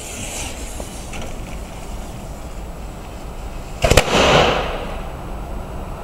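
Jumping-jack firecracker going off: a tight cluster of two or three sharp bangs about four seconds in, followed by a short hiss as it fizzles. Before that, only a few faint clicks and a brief high hiss over a steady outdoor background.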